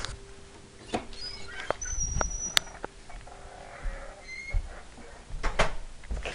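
Handling noise from a handheld camera being moved about: scattered clicks and knocks over a faint steady hum that fades out near the end, with a brief high whine about two seconds in.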